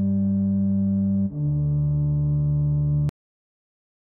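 Two held low notes on an electronic keyboard, the second a step lower and starting about a second in, ending in a sudden cut about three seconds in.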